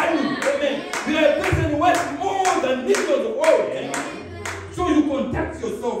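Steady rhythmic hand clapping, about two claps a second, with voices over it.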